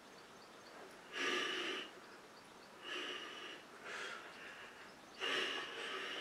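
A man's whispered Latin prayer: four short breathy bursts of unvoiced speech with gaps between them, the loudest about a second in and near the end.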